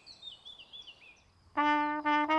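Faint birdsong, then about one and a half seconds in a small brass ensemble starts to play, holding its first note.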